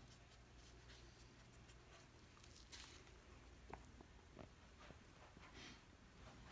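Near silence: faint room hum with a few soft, brief taps as the paint-covered serving tray is handled and tilted.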